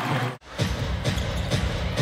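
Basketball arena sound: background music from the arena speakers over crowd noise, with a basketball being dribbled on the hardwood. A play-by-play voice cuts off abruptly at an edit about half a second in, and the arena sound resumes right after.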